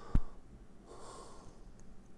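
A single short knock near the start, then a breath let out through the nose about a second in.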